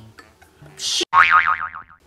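A short hiss cut off sharply, then a cartoon spring "boing" sound effect whose pitch wobbles rapidly up and down for under a second. It is edited in to censor a swear word.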